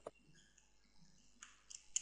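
Faint clicks of a computer being worked at the keyboard and mouse: a single click at the start, then a quick run of several clicks near the end, over quiet room tone.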